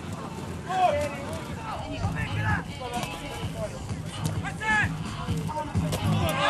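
People shouting short calls out of doors, a few separate shouts over a low rumble of background noise.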